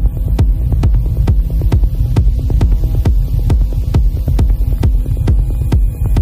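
Techno in a DJ mix: a steady kick drum a little over two beats a second over a deep, droning bass.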